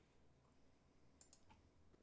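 Near silence on a live stream, with three faint, short clicks close together about a second and a quarter in.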